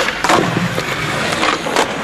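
Skateboard wheels rolling on rough concrete, with several sharp clacks and scrapes as the board strikes a concrete ledge and the ground.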